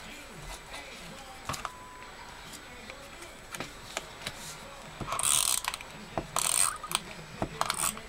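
Snail adhesive tape runner drawn across paper cardstock: two short strokes about five and six and a half seconds in, among small clicks and taps of handling the dispenser and paper.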